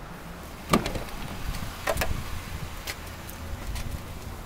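Handling noises inside a car's cabin: a few scattered knocks and clicks over a low steady rumble. The loudest knock comes about three-quarters of a second in.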